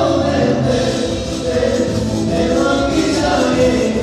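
Live band music with singing, loud and continuous.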